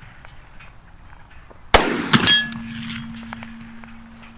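A single 10mm pistol shot, followed about half a second later by the clang of the bullet striking a steel target about 100 yards downrange, which rings on for a couple of seconds. The clang marks a hit.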